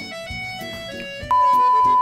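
Light background music, then about a second in a loud, steady, single-pitch beep starts abruptly: the reference test tone that goes with TV colour bars.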